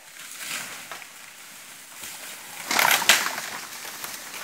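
Dry bamboo and brush crunching and snapping, with a loud cluster of cracks about three seconds in.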